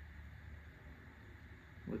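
Quiet room tone: a steady low hum with a faint hiss, and no distinct event.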